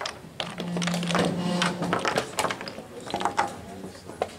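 Wooden chess pieces being set down and chess clocks being pressed at neighbouring boards in blitz play: a string of sharp, irregular clicks and clacks, with a low hum lasting about a second near the start.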